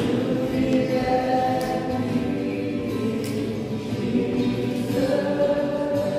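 A group of voices singing a hymn together, holding long notes.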